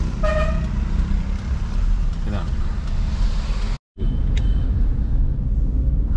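Steady low engine and road rumble heard from inside a moving car's cabin, with a short horn toot just after the start. The sound drops out completely for a moment just before four seconds in, then the rumble carries on.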